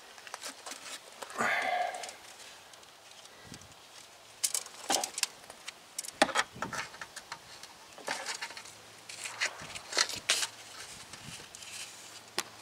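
Irregular sharp clicks and light taps of a brake line being handled and fed through a car's wheel well, with a brief voice sound about a second and a half in.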